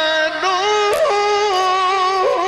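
A male reciter chanting the Quran in the melismatic mujawwad style, holding one long, ornamented vocal line. The pitch steps up about half a second in, with a quick vocal turn around the middle before settling on a held note.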